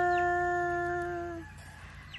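A person's voice holding one long drawn-out vowel at a steady pitch, fading out about a second and a half in.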